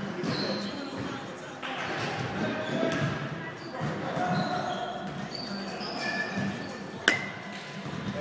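A baseball bat strikes a ball once about seven seconds in: a sharp crack with a brief ringing ping. Voices murmur in the background throughout.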